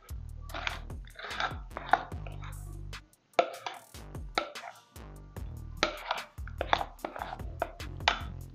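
Background music, with a metal spoon scraping and clicking against a ceramic plate as thick cake batter is pushed off into a pan.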